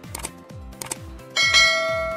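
Subscribe-animation sound effects over background music: two short clicks, then about one and a half seconds in a loud bell ding that rings on.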